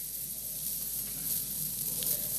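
Steady hiss of room tone and microphone noise, with no speech and no distinct events.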